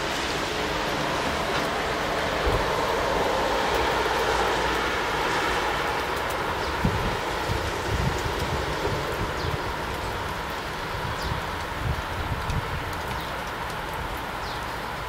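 Broad outdoor rushing noise, like distant traffic or a passing train, swelling over the first few seconds and then easing. Irregular low bumps come in the second half, and a few faint, short high chirps from small birds.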